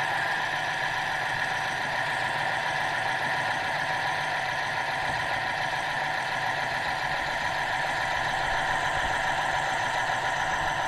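Seadoo underwater scooter's electric motor and propeller running steadily underwater, a whine made of several held tones over a low hum, its thrust blowing sand off the seabed.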